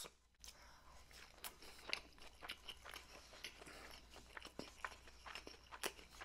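Faint, close-miked chewing of a sushi roll: irregular small crunches and wet mouth clicks.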